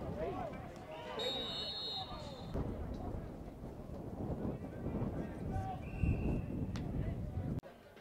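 Players and coaches shouting and talking on a football practice field, with a short high whistle about a second in and a sharp knock near the end. The sound drops away suddenly just before the end.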